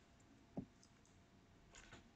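Near silence: room tone, with a faint click about half a second in and a softer one near the end.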